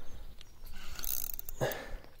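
A hooked sazan (wild common carp) thrashing at the surface while being played, with a short splash a little after one second in.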